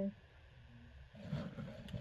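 Packaging rustling and crinkling as clothing is handled and pulled out. It starts about a second in and grows louder.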